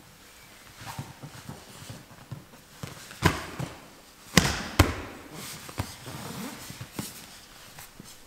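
Two grapplers scrambling on foam mats at full speed: bodies and limbs knock and thump onto the mat amid rustling of clothing, with the two loudest thumps coming close together about halfway through.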